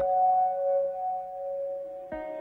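Channel intro music: a single struck, bell-like note ringing on at two steady pitches and slowly fading.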